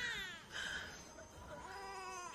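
Newborn baby crying: a wail falling in pitch at the start, then another cry beginning about one and a half seconds in.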